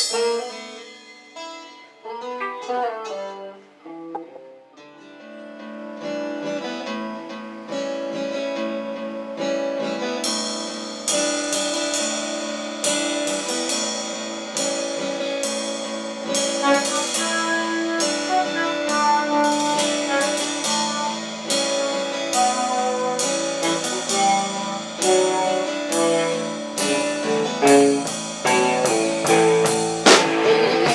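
Rock band playing an instrumental passage on electric and acoustic guitars, bass and drum kit. It opens with a guitar picking a few sparse notes, the other instruments come in with sustained chords about five seconds in, and the drums and cymbals join about ten seconds in, keeping a steady beat.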